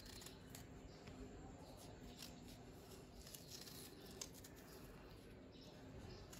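Faint, crisp little cuts of a small carving knife slicing petals into a raw radish, soft irregular clicks over near silence.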